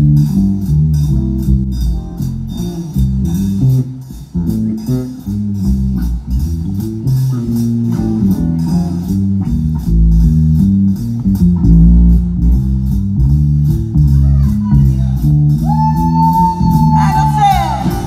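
Live blues band playing an instrumental passage: electric guitars, bass guitar and drum kit over a steady beat. A lead line holds a long high note near the end, then bends and slides.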